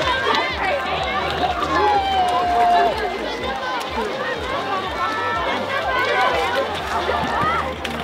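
Crowd of spectators talking and calling out, many voices overlapping, with one voice holding a long call about two seconds in.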